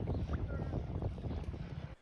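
Wind blowing on a handheld camera's microphone at a shallow saltwater shore, a steady rumbling hiss that stops abruptly near the end.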